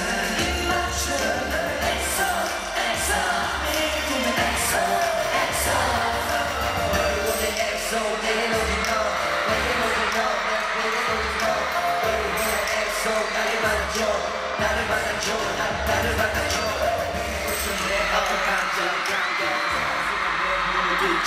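Live K-pop concert sound: a boy band's pop song with a steady bass beat, the members singing into microphones over the arena sound system.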